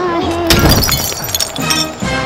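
A glass liquor bottle smashes on an asphalt road about half a second in, followed by about a second of glass pieces clinking and scattering.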